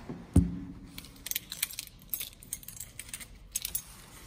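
A door shuts with a thump about half a second in, then a bunch of keys jangles in a run of small metallic clinks for about two and a half seconds.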